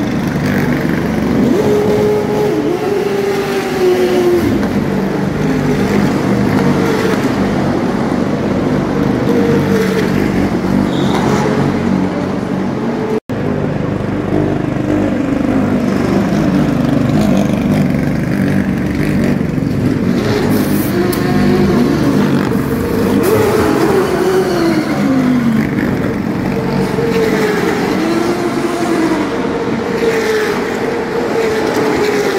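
Stock car racing engines running in the pit lane, several at once. Their pitch keeps rising and falling as cars rev and drive past. The sound drops out for an instant about halfway through.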